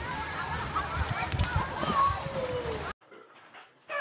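Many children's voices shouting and squealing at a busy swimming pool, over a steady wash of pool noise and low thumps; it cuts off suddenly about three seconds in.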